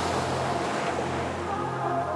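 Ocean surf washing up a beach, a steady hiss of breaking foam, under background music with sustained low bass notes.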